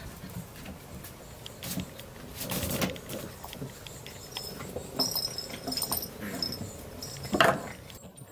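A puppy moving about in a plastic dog kennel: its claws click and scrabble on the hard plastic floor, with small scuffs and bumps. There is one louder, short sound about seven seconds in.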